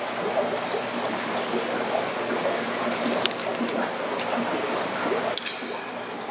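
Steady trickling and bubbling of aquarium water, with a couple of light clicks about three and five seconds in.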